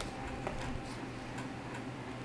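Quiet room with a few faint ticks over a low steady hum.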